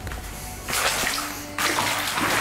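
Water sloshing and splashing in an inflatable pool packed with plastic play balls, as hands stir through it, in two bursts: one just before a second in, another near the end.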